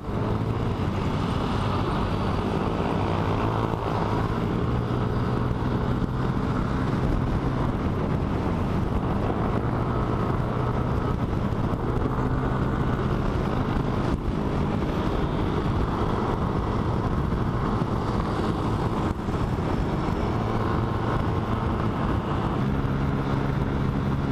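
Yamaha Aerox scooter's single-cylinder engine and drivetrain running steadily at road speed, with wind noise on the microphone.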